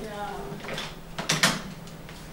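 A man's voice, low and brief, then a short rustle of paper about a second and a half in.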